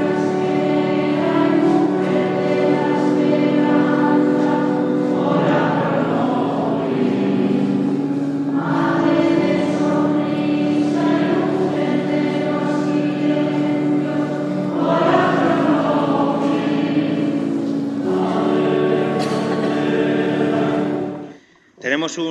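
A church choir singing a slow hymn in long held chords, phrase after phrase, during communion at Mass. The singing cuts off abruptly about a second before the end.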